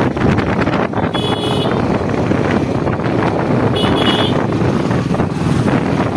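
Bajaj Pulsar 220's single-cylinder engine and wind rushing past the microphone while riding, as a steady noise. A vehicle horn sounds twice, briefly, about a second in and again about four seconds in.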